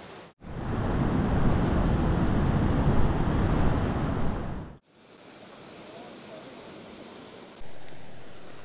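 Sea surf and wind rushing loudly for about four seconds, then cutting off abruptly to a quieter, steady rush.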